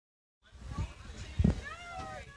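A low thump, then a person's voice calling out in a drawn-out, gliding pitch, over background chatter.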